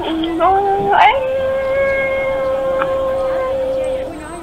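A singing voice in a song: a short sung phrase, then one long steady note held from about a second in until just before the end.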